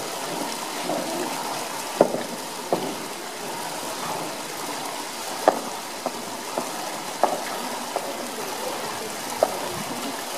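Pool water splashing and lapping as a polar bear plays with a plastic traffic cone at the pool wall, with several short, sharp knocks scattered through.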